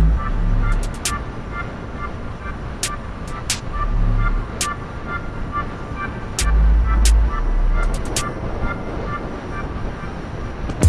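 Moped running at steady riding speed, with wind and road noise on the onboard camera and a few stretches of low rumble.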